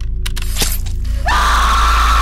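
Horror trailer score and sound design: a low music drone, a few sharp crashing hits about half a second in, then a loud, high, held shriek that swells in just after a second in.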